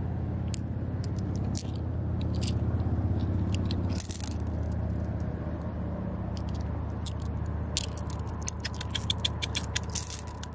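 Smooth glass gems and pebbles clicking and scraping against each other as a hand gathers them from wet sand in shallow water, with a quick run of clicks near the end. A steady low rumble runs underneath.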